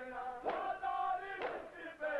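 A crowd of men chanting a noha in unison, with two slaps of chest-beating (matam) struck together about a second apart.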